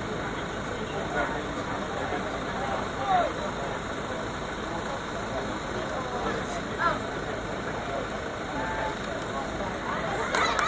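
Open-air ambient sound of a rugby pitch: a steady background rumble with a few scattered, distant shouts and calls from players.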